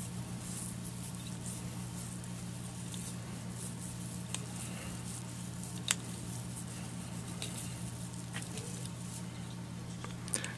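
Plastic chenille rustling and crinkling faintly as it is wrapped around a fly hook's shank, with a few small clicks, the sharpest about six seconds in, over a steady low hum.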